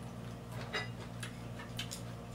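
Light clicks and ticks of eating at a table, a few scattered ones, over a steady low hum.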